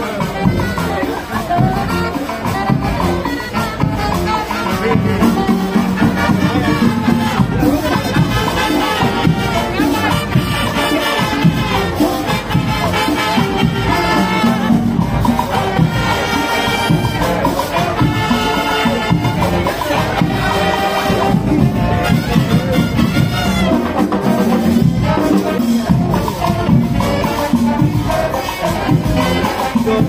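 A Salvadoran marching band playing a lively tune, brass over drums with a steady beat.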